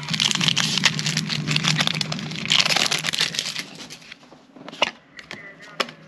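Foil Pokémon booster-pack wrapper crinkling as it is torn open: a dense crackle for about three and a half seconds that thins to a few scattered clicks.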